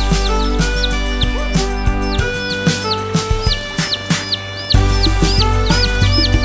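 Upbeat children's song music with a steady beat, with short high bird-like chirping tweets repeated over it, about two or three a second.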